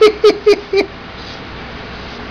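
A man chuckling in a quick run of about six short falling 'heh' pulses that stop under a second in.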